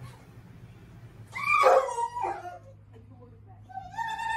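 A dog gives one loud, high-pitched call about a second in, lasting about a second and falling in pitch, and starts another high call near the end.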